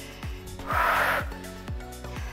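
Upbeat workout music with a steady kick-drum beat, and a short, forceful exhale about a second in from a woman straining through a dumbbell deadlift.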